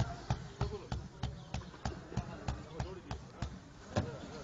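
Hands slapping a large, flour-dusted ball of roti dough in a steady rhythm, about three slaps a second, pausing shortly before the end. Voices are in the background.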